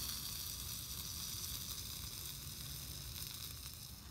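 Bratwursts sizzling on a hot metal steamer basket over a BioLite wood-burning camp stove: a steady, even hiss that slowly fades.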